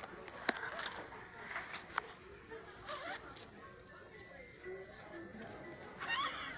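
Clothes rustling with a few soft clicks as a jacket is taken off and a fuzzy jacket is pulled on.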